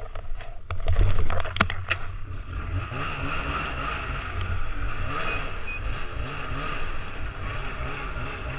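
Snowmobile pulling away and riding along an icy road: a run of sharp clicks and knocks in the first two seconds, then a steady engine rumble with track and runner noise on the ice.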